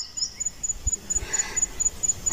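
A high-pitched insect chirping in a fast, even pulse, about five chirps a second, with a few faint low thumps.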